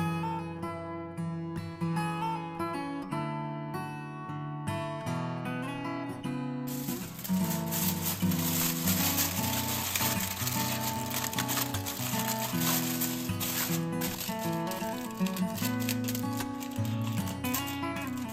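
Acoustic guitar background music, with aluminium foil crinkling from about seven seconds in as it is crimped by hand over the rim of a round pudding pan.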